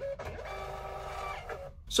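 Munbyn thermal label printer feeding out a shipping label, its motor giving a steady multi-tone whine for about a second and a half before stopping.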